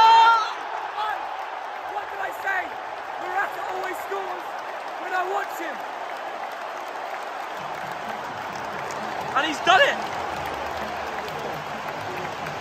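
Football stadium crowd cheering and applauding a goal, with a man's loud yell at the start and another shout near ten seconds in.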